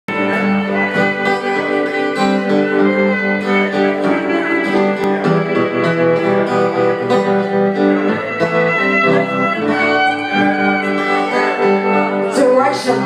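Violin playing held, sliding notes over guitar accompaniment: live band music with no vocals.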